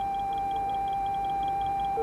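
Steady electronic tones from simulator equipment, several held pitches at once, with a fast run of faint high pips, about six a second.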